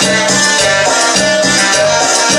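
Live cumbia music from a band playing through a PA system, loud and continuous, with a steady repeating bass pattern under shaker percussion.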